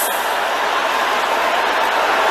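A large congregation praying aloud all at once: many voices shouting over one another in a steady, dense din, with no single voice standing out.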